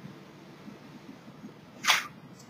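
Faint room noise, then a short, sharp rush of breath near the end.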